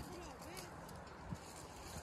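Faint, indistinct distant voices over a low steady rumble, with one soft tick a little past halfway.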